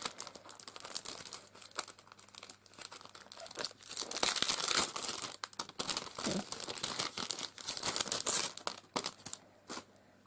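Clear plastic packet crinkling and rustling in the hands as it is opened and lace is pulled out of it. The crinkling comes in bursts, loudest about four to five seconds in and again around eight seconds, and dies away near the end.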